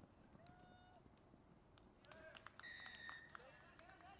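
Referee's whistle blown once, a short steady blast past the middle, stopping play, with faint distant shouting from players before and after it.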